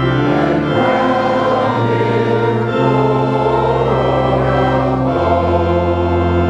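A group of voices singing a hymn with organ accompaniment, the organ holding sustained chords that change every second or two.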